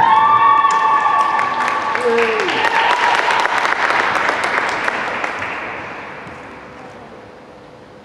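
Audience applauding and cheering as a skater takes the ice, with a long drawn-out shout at the start and another short call about two seconds in. The clapping dies away after about five seconds.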